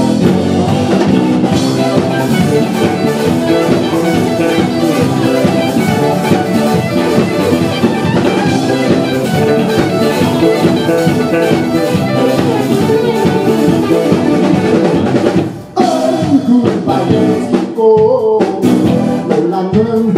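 Rock band playing live: electric guitars, bass and drum kit. The band stops for an instant about three-quarters of the way through, then crashes straight back in.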